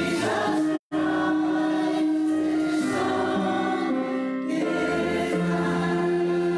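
A choir singing a hymn in long, held notes that move in steps from one chord to the next. The sound cuts out completely for a split second just under a second in.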